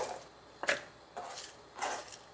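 Kitchen knife chopping minari (water dropwort) stalks on a plastic cutting board: a few separate, short cuts about half a second apart, with quiet between.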